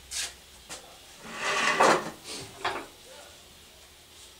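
Objects being handled and moved about on a workbench: a few short knocks and scrapes, the longest and loudest about two seconds in.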